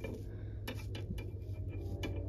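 A few faint clicks and taps from a plastic animatronic part being handled and fitted into holes in a plastic cauldron frame, over a steady low hum.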